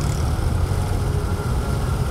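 Diesel engines of a column of tractors driving slowly past, a steady low rumble.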